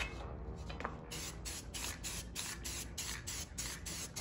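Aerosol spray-paint can spraying in rapid short bursts, about five a second, starting about a second in.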